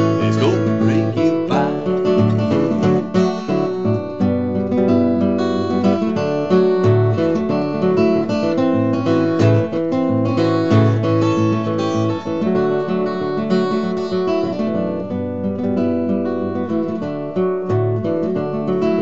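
Steel-string acoustic guitar fingerpicked in country-blues style, an instrumental break with steady thumbed bass notes under a picked melody.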